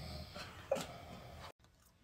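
A woman's stifled laughter behind a hand over her mouth, fading out, with one short pitched burst a little under a second in, then dead silence after a sudden cut.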